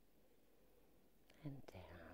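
Near silence: quiet room tone, until a woman's voice comes in near the end.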